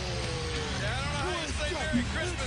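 Wrestling TV broadcast audio: voices shouting and talking over a steady low arena crowd din.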